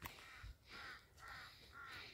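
A bird calling faintly: about four short calls in quick succession, roughly half a second apart, each bending down in pitch.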